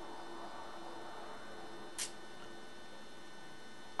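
Steady electrical hum with faint room noise, and one brief click-like sound about halfway through.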